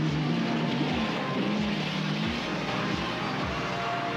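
A Ford Bronco II's engine running as it drives along a dirt trail, its low note wavering up and down.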